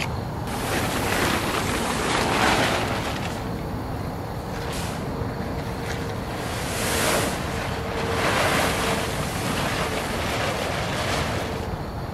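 Blue plastic tarp rustling and crinkling in several swells as it is pulled down off the side of a school bus.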